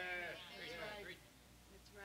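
A faint, drawn-out voice from the congregation: one held, wavering vocal note of affirmation, then a few murmured words. It trails off into low room tone about a second in.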